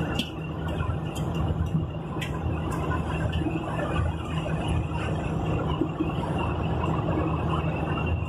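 Steady engine and road noise heard from inside a vehicle's cabin while it drives at highway speed: a continuous low rumble, with a faint steady high whine and a few light clicks.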